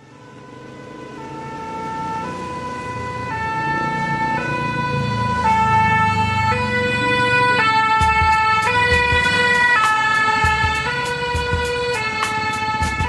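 Two-tone fire engine siren alternating between two pitches about once a second, growing louder over the first half as it approaches. From about two-thirds in, a steady beat of sharp hits, about three a second, plays along with it.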